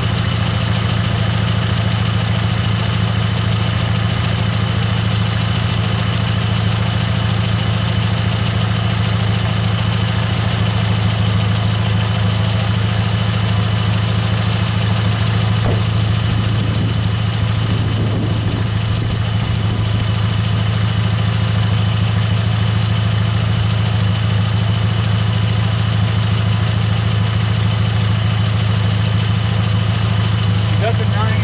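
Volkswagen New Beetle engine idling steadily with the hood open.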